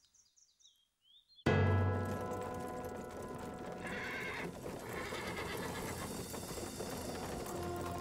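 Dramatic soundtrack music starts abruptly about a second and a half in, over horses' hoofbeats. A horse whinnies about four seconds in.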